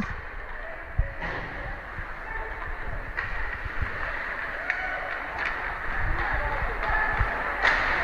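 Ice hockey game in play in a rink: a steady hiss of skates on ice with a few sharp clacks of stick and puck, about a second in, again about three seconds in and near the end, under faint distant shouts.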